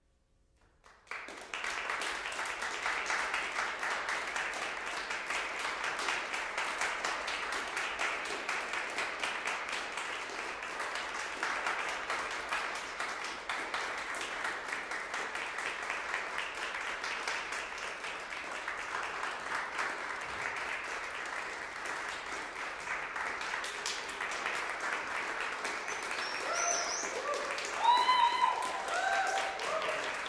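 Audience applause that breaks out suddenly about a second in and goes on steadily. A few shouted voices rise over it near the end.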